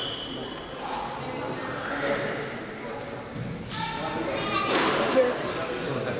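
Indistinct voices echoing in a squash court, with a sharp squash-ball thud about five seconds in.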